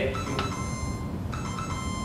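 Two synthesized chime notes in a row, the answer sound of a Scheme-written quiz program that makes its own tones with a software synthesizer. The second note starts a little over a second in.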